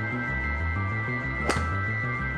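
A single sharp hit about one and a half seconds in: a driver striking a two-piece Wilson Duo Soft golf ball off a tee. It sounds over steady background music.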